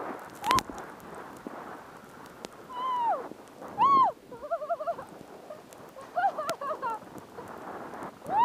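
Steady hiss of a rider sliding through powder snow, broken by short whooping shouts that rise and fall in pitch, one of them a wavering call near the middle.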